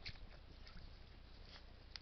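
Near silence: a faint low hum with a few soft, scattered clicks.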